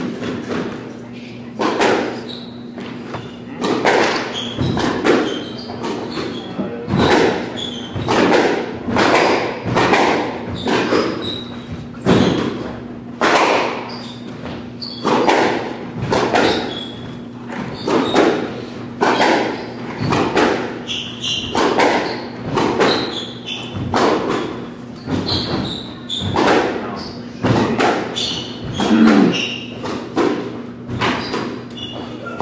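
A squash rally: the rubber ball cracked by racquets and hitting the court walls, a run of sharp knocks about one or two a second, ringing in the enclosed court.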